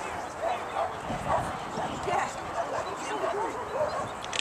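Dogs barking and yipping in many short, excited calls, over people talking in the background.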